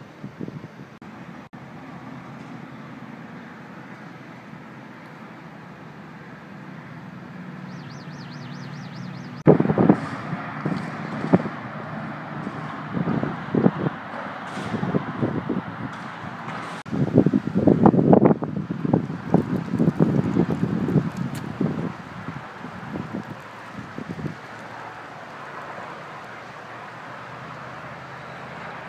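Outdoor roadside ambience: a steady hum of distant traffic. From about a third of the way in, irregular gusts of wind buffet the microphone for several seconds, then die down again near the end.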